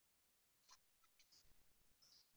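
Near silence, with a few faint, short clicks in the first half.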